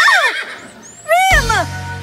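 Cartoon unicorn whinnying twice, each call falling in pitch, over background music.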